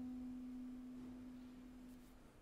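Solo clarinet holding one long, soft low note that slowly fades away.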